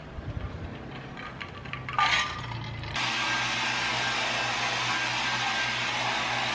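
Handheld hair dryer running steadily, an even rush of blown air over a low motor hum, starting abruptly about halfway through. Before it comes a brief hiss about two seconds in.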